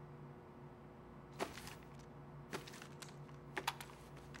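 Faint, scattered taps and clicks, a few sharp ones spaced about a second apart with a quick pair near the end, over a low steady hum.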